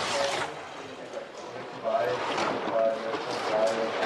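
A skeleton sled's steel runners rushing and scraping over the ice of the bobsleigh track as the slider passes the trackside microphones. The noise dips about a second in and swells again around two seconds in.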